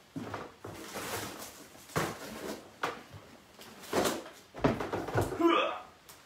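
Indistinct talking in a small room, with a few knocks or bumps, and a short rising vocal exclamation near the end.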